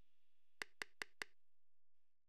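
Four light knocks in quick, even succession, about five a second, like wooden toy blocks set down one after another: a sound effect for the four-block logo appearing.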